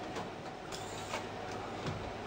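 Steady low room hum with a few faint, brief rustles and a soft tap of makeup being handled close by.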